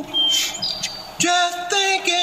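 Brief high bird chirps in a pause in the song, then an unaccompanied gospel singing voice comes back in a little over a second in, holding a steady note.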